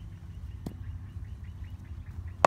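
A bird calling in a quick series of short high chirps over a low steady outdoor rumble, with one light knock a little past the middle.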